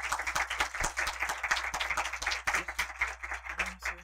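Audience applauding: many people clapping together, fading away near the end.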